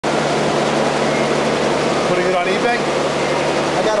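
Steady, loud mechanical noise with a constant low hum, like machinery or ventilation running in a workshop. A brief voice is heard about two and a half seconds in.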